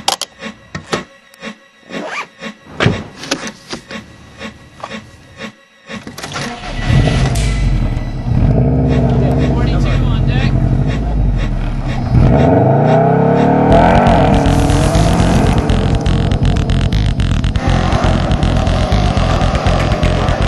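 A few scattered clicks and knocks, then from about six seconds in a loud car engine running, rising in pitch around the middle, with music mixed over it.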